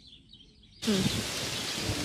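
Faint outdoor ambience with a few high, bird-like chirps. About a second in it jumps suddenly to a steady, much louder hiss of open-air background noise, with low murmured voices in it.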